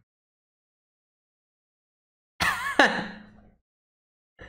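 Silence, then about two and a half seconds in a man's short laugh that fades out within a second.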